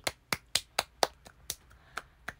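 A person clapping hands steadily, about four sharp claps a second.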